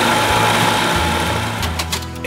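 1975 Evinrude 40 hp two-stroke outboard running under way at speed, with wind and water noise, on spark plugs gapped at 32 and indexed. It gets quieter toward the end as it eases off.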